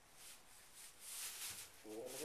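Straw bedding rustling and crunching under a newborn foal's hooves as it shuffles unsteadily, with a soft thump about one and a half seconds in.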